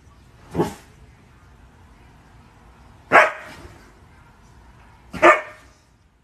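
Siberian husky giving three short barks: a softer one about half a second in, then two louder ones near three and five seconds.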